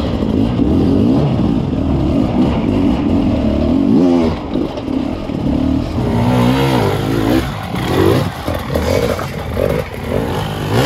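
Beta RR 300 two-stroke enduro engine worked at low revs over rough ground, its pitch rising and falling with short blips of the throttle. There is a sharper rev about four seconds in and several more in the second half.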